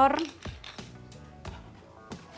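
Hand pepper mill being twisted over a bowl, giving a few faint grinding clicks under soft background music.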